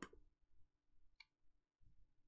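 Near silence: faint room tone with a low steady hum, and one small click about a second in as plastic kit parts are handled.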